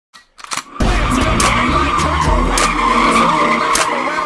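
Car tyres squealing steadily in a burnout, under a hip-hop beat with heavy stepping bass and regular sharp hits. The beat kicks in just under a second in.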